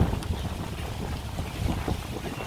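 Wind buffeting the microphone outdoors: an uneven low rumble that rises and falls in gusts.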